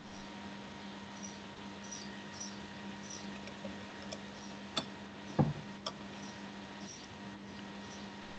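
Faint steady low hum from a video call's audio line, with scattered faint high squeaks, a couple of small clicks and one brief low thump near the middle.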